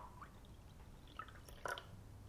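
Solution dripping from a small glass beaker into a tall glass of liquid: a sharp little splash at the start, then a few faint separate drips, one of the louder ones near the end.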